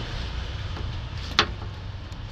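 A single sharp click as the chrome airbrush is handled in its foam-lined plastic case, over a steady low background rumble.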